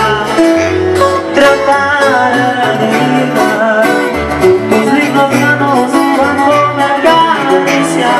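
Live regional Mexican band music: plucked guitars play melodic lines over a bass that steps between held notes.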